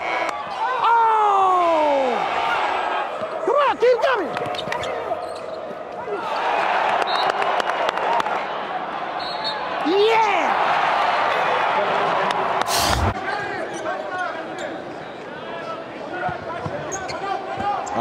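Courtside sound from a coach's wireless mic: his shouts and claps over an arena crowd cheering, with a basketball bouncing on the hardwood. A single sharp bang comes about two-thirds of the way through.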